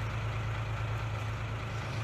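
A vehicle engine idling: a steady, even low hum under a faint haze of outdoor background noise.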